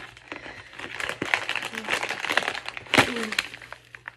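Crinkling and rustling of a plastic bag of gummy hearts being handled and pulled from its heart-shaped gift package, with a sharp snap about three seconds in.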